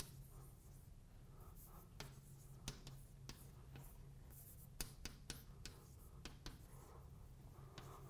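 Chalk writing on a blackboard: faint, irregular taps and short scratches as the chalk strikes and drags across the board.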